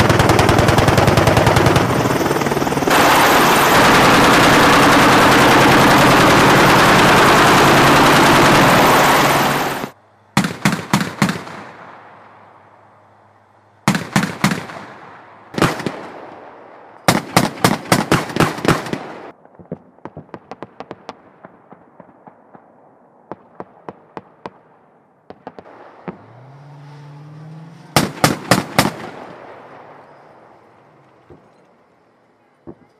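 Loud, continuous noise of an AH-64 Apache attack helicopter close overhead for about the first ten seconds, cutting off abruptly. Then an M2 Bradley fighting vehicle's 25 mm chain gun fires about five short bursts of rapid, evenly spaced shots, each echoing, with faint distant shots between them and an engine rising in pitch briefly before the last burst.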